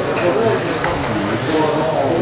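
Indistinct talking of people's voices in a gym hall, with no clear words.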